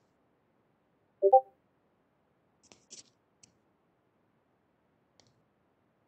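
A short electronic chime from the Cisco Webex Meetings app, a few steady notes sounding together about a second in, as a participant leaves the meeting. A few faint clicks follow.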